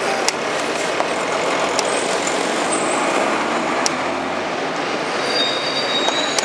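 Steady street traffic noise, with a few sharp clicks of wooden chess pieces being set down on a wooden board during blitz play.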